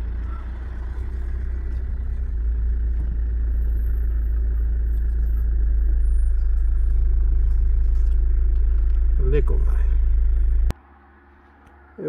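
Car cabin noise while driving slowly: a deep, steady engine and road rumble that grows louder about halfway through. It cuts off suddenly with a click a little before the end.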